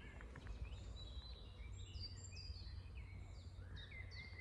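Faint birdsong: many short whistled notes and slurred glides from songbirds, overlapping throughout, over a low steady background rumble.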